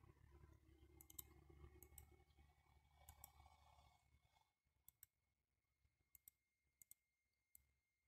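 Near silence with faint, scattered computer mouse clicks, about ten of them, a few in quick pairs, over a faint low room hum that fades out about halfway through.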